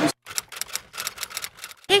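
A rapid run of light clicks, roughly eight to ten a second, that starts and stops abruptly. A woman says "hey" right at the end.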